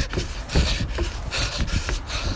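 A man breathing hard, about two heavy breaths, while running up stairs without a break. Under the breaths, a steady low rumble comes from the jostled handheld phone's microphone.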